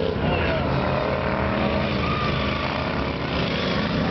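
Engines of several modified racing lawn mowers running together in a steady, overlapping drone as they lap the course.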